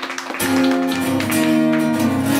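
Acoustic guitar played live, opening a song with picked and strummed chords; a fuller chord with low bass notes comes in about half a second in and rings on.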